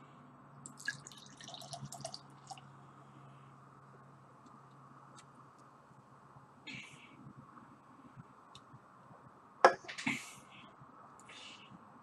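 Session ale poured from a can into a pint glass: faint liquid and fizzing sounds with a few light clicks, and one sharp knock about two-thirds of the way through.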